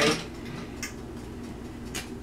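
Quiet room hum with two faint, short clicks about a second apart, from hands laying a sheet of polymer clay down on a plastic cutting mat.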